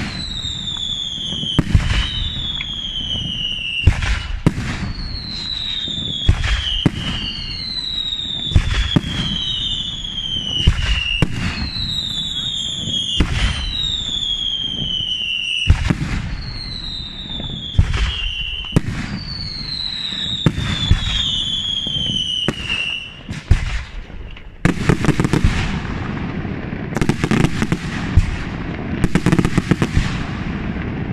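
Daytime aerial fireworks going off in quick succession: sharp bangs every half second to a second, overlaid by whistles that each fall in pitch and repeat about once a second. After about 24 s the whistles stop and a denser run of crackling reports follows.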